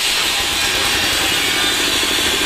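A power tool running steadily on a construction site.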